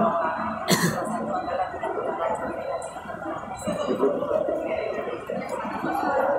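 A single short cough about a second in, over a murmur of indistinct voices from the crowd of reporters.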